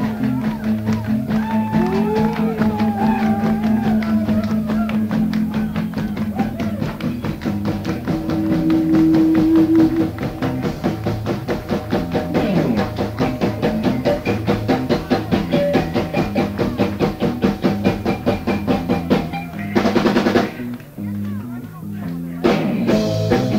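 Live progressive rock band (guitar, keyboards, bass and drums) playing a busy passage with a fast, even pulse of repeated notes. A loud accent comes near the end, then a short lull.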